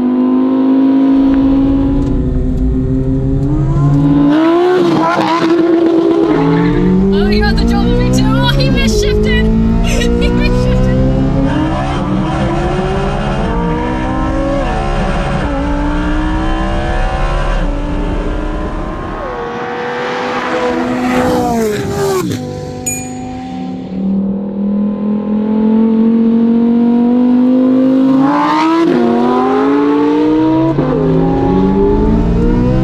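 Supercar engines accelerating hard in a roll race, the note climbing in pitch and dropping back at each upshift several times over. About two thirds through the engine note falls away suddenly, then it climbs again near the end.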